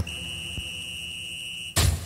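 The trance music breaks off and a steady, high-pitched electronic beep holds for about a second and a half. A loud sharp click cuts it off near the end, followed by a fading hiss.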